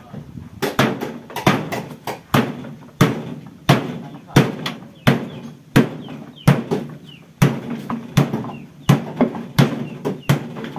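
Repeated metal-on-metal blows on the sheet-metal cabinet of an old refrigerator being broken apart for scrap, about fourteen sharp strikes in ten seconds, each ringing briefly.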